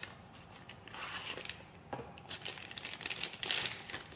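Cardboard box flap opened and a clear plastic bag crinkling as a gas magazine is slid out of it, the rustle coming in two stretches, about a second in and again near the end.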